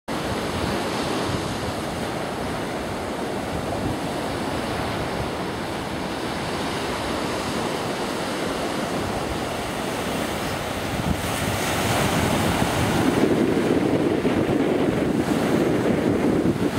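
Wind rushing over the microphone, mixed with the steady wash of surf breaking on the beach; it grows louder about eleven seconds in.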